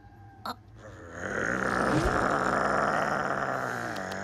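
A cartoon fennec fox makes one long, breathy, snore-like vocal sound while dozing, after a short click about half a second in.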